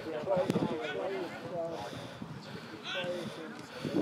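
Indistinct voices calling and shouting across the field, no words clear, with a single short click about half a second in.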